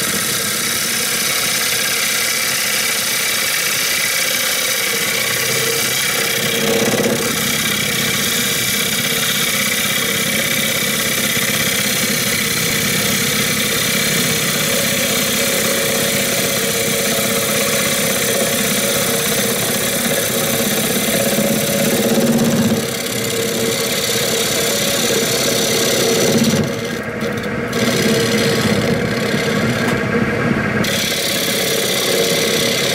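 Turning gouge cutting a spinning cherry platter blank on a wood lathe: a steady, rough shearing as shavings fly off, over the running lathe. The cut eases off briefly twice near the end.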